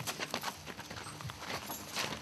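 Irregular knocks and clicks, several a second, over a faint low hum.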